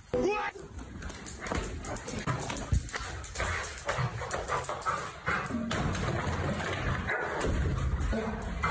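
A golden retriever whimpering over people's voices, with scuffling and short knocks as the dog tugs a man by the leg.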